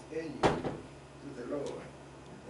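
A single sharp knock about half a second in, over a man's voice reading aloud in a small room.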